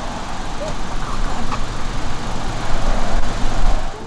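Wind buffeting the microphone outdoors: a steady rumble and hiss that swells and gusts, loudest near the end.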